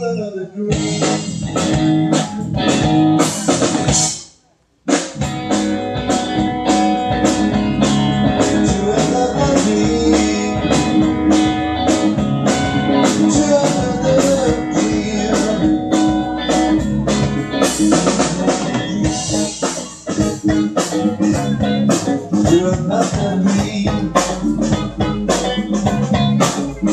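A live rock band plays an instrumental passage on electric guitar, bass guitar and drum kit. The sound cuts out completely for about half a second around four seconds in, then the music resumes.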